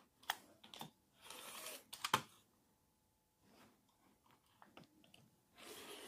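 Rotary cutter slicing through sewn quilting fabric along an acrylic ruler on a cutting mat, a short rasping cut a little over a second in and another starting near the end. A few light clicks come from the ruler and cutter being handled.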